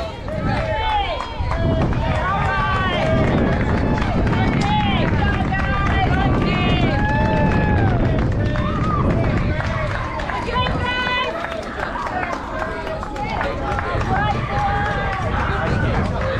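Babble of many children's voices calling out at once in short, high-pitched calls that overlap throughout, over a low rumble.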